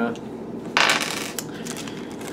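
Dice set down onto a table: one short clatter about three-quarters of a second in, followed by a few light clicks.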